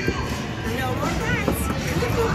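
Casino floor background: music playing with voices over it.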